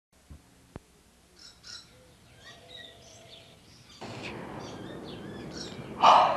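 Faint morning birdsong: scattered short chirps and calls from several small birds. There is a single sharp click near the start, and about four seconds in a steady background hiss rises.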